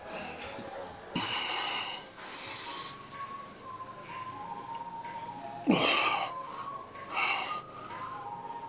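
Forceful breaths pushed out during reps of a cable chest fly: a long one about a second in, the loudest with a sharp start a little before six seconds in, and a shorter one near the end.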